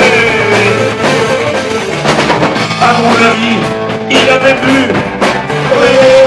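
Live rock band playing: electric guitar, bass and drums. A male singer's held note slides down and fades in the first second, and another held note comes in near the end.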